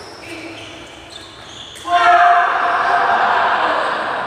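Badminton rally in a large, echoing hall: a few racket hits on the shuttlecock, then, about two seconds in, loud shouting voices.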